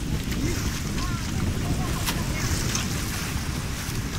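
Wind buffeting the microphone over choppy lake water, with small waves washing against shoreline rocks.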